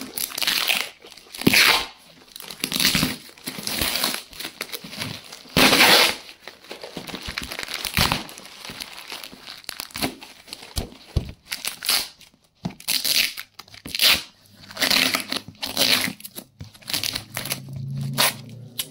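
Clear packing tape and plastic wrap being peeled and torn by hand off a cardboard parcel: irregular crinkling and ripping strokes, some short, some drawn out over a second or so.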